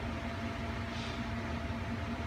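Steady low background hum with a faint constant tone running through it, the noise of the room.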